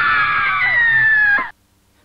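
A person screaming, one long high-pitched scream that cuts off abruptly about one and a half seconds in.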